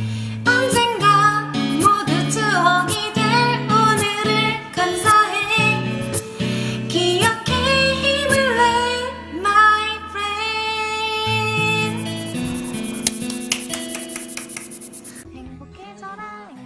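A woman singing a Korean pop song over a karaoke backing track. The music fades over the last few seconds and cuts off about a second before the end.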